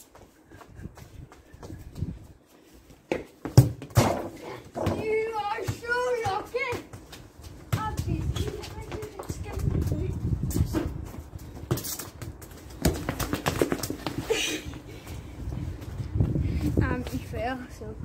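Children's voices talking and calling out, broken by a few sharp knocks, the loudest a little over three seconds in. Wind rumbles on the microphone through the second half.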